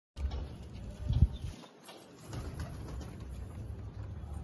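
Domestic pigeons cooing and moving about in a wire cage, with a loud low burst about a second in.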